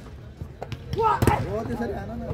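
A volleyball struck hard: one sharp slap a little over a second in, with a few lighter knocks before it.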